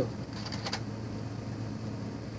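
Steady low room hum, with a brief faint click of a plastic Nerf blaster and holster being handled about half a second in.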